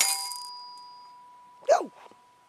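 A toy xylophone's metal bar struck once, its note ringing and fading away over about a second and a half.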